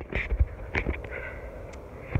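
A few soft knocks and rustles in the first second as a handheld phone is moved and gripped, then a faint steady outdoor background.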